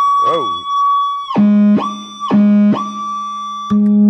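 Electric guitar run through a fuzz pedal with its feedback toggle engaged, sustaining a steady high-pitched feedback tone. The tone drops abruptly to a lower, buzzier drone and jumps back up three times, as the toggle's self-oscillation is switched and played.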